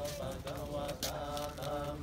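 Buddhist chanting: a recitation held on a few steady pitches, broken into short phrases.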